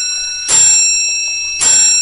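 A bell struck twice, about a second apart, each stroke ringing with several high tones and fading; part of an even series of strokes.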